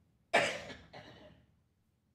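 A person coughing close to a microphone: one loud, sudden cough, then a second, weaker one just after it.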